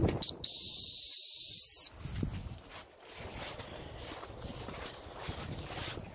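A dog whistle blown as a short pip and then one long, steady, high blast of about a second and a half, signalling the dogs to come back.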